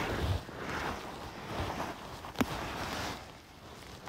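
Rustling and handling noise from a bunch of picked flower stems and grass close to the phone's microphone, with one sharp click about two and a half seconds in.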